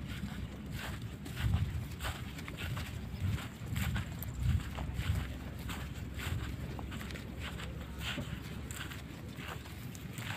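Footsteps of a yoked pair of young bull calves and the people walking with them on grassy ground: soft, irregular steps. A few low rumbles on the microphone come in along the way.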